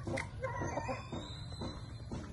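Hens clucking, short calls about twice a second, with one longer rising call about half a second in.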